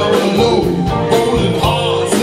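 Live band playing a song, with a steady drum beat under guitar and voices.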